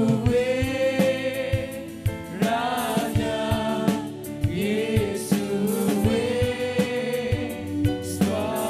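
Live gospel worship song: a man sings lead into a microphone, holding long notes, over band accompaniment with a steady drum beat.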